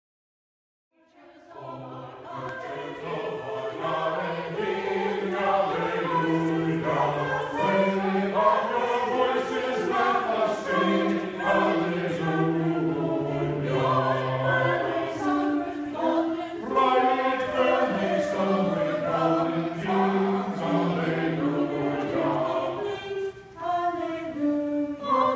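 Church choir singing, fading in about a second in, in long held notes.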